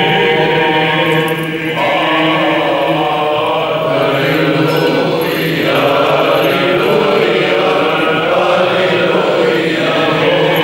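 Orthodox clergy singing Byzantine funeral chant together, with a steady low note held underneath.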